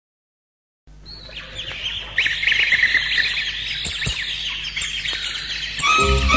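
Silence for about the first second, then recorded canaries twittering and trilling, many quick rising and falling chirps. They fade in and grow louder about two seconds in.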